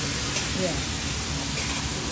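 Stir-fry vegetables and shrimp sizzling and steaming on a hot flat-top griddle: a steady hiss.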